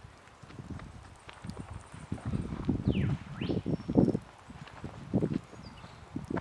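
Irregular footsteps on a soft bark-mulch woodland path, heaviest a couple of seconds in, with a few faint high bird calls above them.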